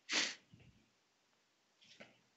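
A person sneezing once, a short sharp burst right after a quick intake of breath, followed by a faint breath near the end.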